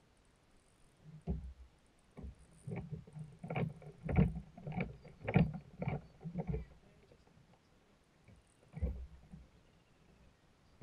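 Irregular hollow knocks and bumps on a fishing kayak's hull, a close run of them through the middle and one more near the end.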